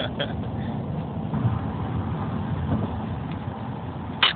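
Steady road and engine noise inside a car's cabin at freeway speed, a low even rumble.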